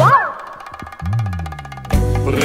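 Comic cartoon-style sound effects in a break in the music: a quick whistle-like glide up and back down, then rapid even ticking with a low falling boing about a second in.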